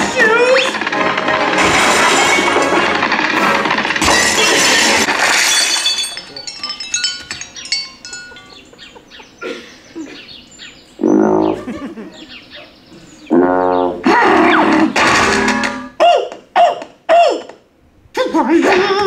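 Soundtrack of an animated cartoon short playing over theater speakers: music, cartoon voices and sound effects. It is dense and loud for the first six seconds, then thins out into sparse short notes, a couple of gliding cartoon effects and short bursts near the end.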